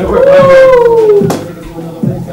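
One long howl-like call, rising a little and then sliding down in pitch for about a second, over music with a steady beat. A single sharp snap comes as the call ends.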